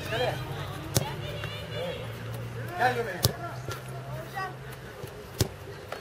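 A football being struck during goalkeeper practice: three sharp thuds about two seconds apart, with fainter knocks between, as balls are kicked, caught and hit the ground. Children's voices call out in the background over a low steady hum that stops about five seconds in.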